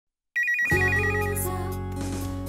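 Programme intro jingle that opens with an electronic phone ringtone, a fast high warble repeating about ten times a second. Synthesized music with a deep held bass note comes in under it and carries on after the ring stops.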